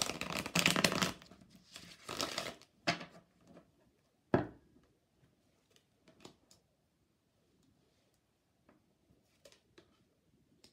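A deck of tarot cards is shuffled by hand in two rustling bursts. About four seconds in, the deck knocks sharply once on the wooden tabletop, followed by soft taps as cards are laid down on it.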